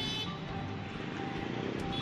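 Busy street traffic: motorcycles, scooters and auto-rickshaws running past in a crowded market street, a steady mixed drone of small engines.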